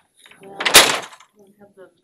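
A single loud thump or clunk about three-quarters of a second in, lasting about half a second, followed by faint talk.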